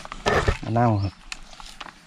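A man's voice saying one Thai word, 'manao' (lime), followed by faint clicks and rustles of soil being scooped by hand from a plastic bucket into a clear plastic cup.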